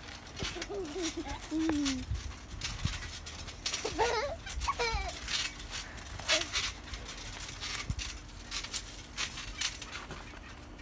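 Children squealing and giggling in short bursts, with scattered thumps and rustles from jumping on a trampoline.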